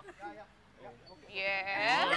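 A person's voice: a little quiet talk, then a drawn-out, high-pitched vocal exclamation beginning about halfway through.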